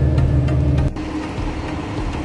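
Riding inside a city bus: steady low engine and road rumble, which cuts off abruptly about a second in. Quieter street sound follows, with a faint steady hum.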